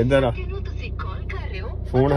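Steady low hum of a moving car heard from inside the cabin, with a word spoken at the very start and faint voices under the hum for the rest.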